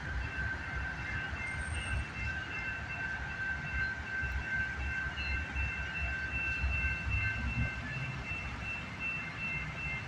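A passing train: a steady low rumble with a high, ringing squeal that keeps dropping out and coming back.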